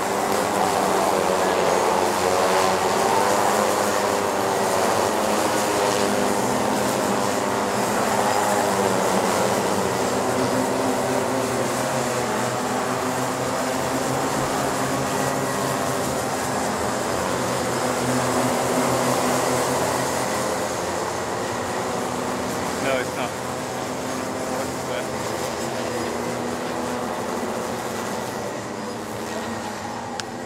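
A pack of Rotax Micro Max two-stroke kart engines racing, many engine notes overlapping and rising and falling in pitch. Loudest in the first twenty seconds, then fading as the karts move away. A brief click about 23 seconds in.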